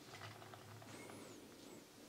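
Very faint rolling of a Mega Construx Mega Wrex toy monster truck on its rubber tyres as it is pushed by hand across a wooden tabletop; near silence overall.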